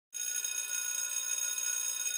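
A bell sound effect rings out suddenly in a steady, bright ring for about two seconds, then starts to die away near the end.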